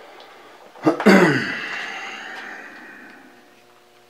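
A sharp metallic clank about a second in, just after a small click, as a metal object strikes metal; its ringing fades out over about two seconds.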